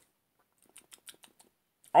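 Faint mouth clicks and lip smacks, a quick run of about eight in under a second, from a man tasting a sip of bourbon mixed with bitter lemon. A man's voice starts speaking right at the end.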